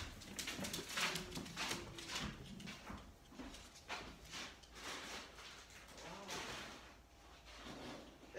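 Scattered knocks and clatter of things being handled and moved about off-camera, with faint voices in the background early on.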